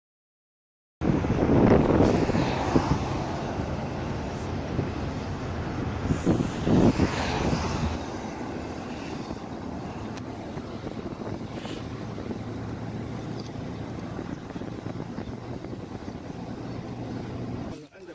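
Vehicles driving along a road: steady engine hum and road noise with wind on the microphone, louder with some voices in the first several seconds, then evener.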